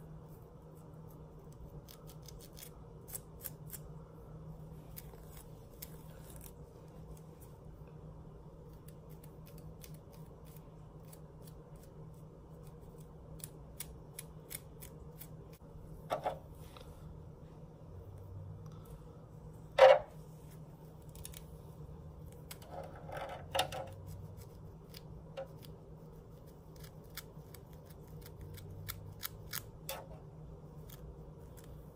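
Fingernails and a plastic comb scratching a dry, flaky scalp between braids, heard as a run of faint crisp ticks and scrapes over a steady low hum. A few louder scrapes come past the middle, with one sharp knock among them.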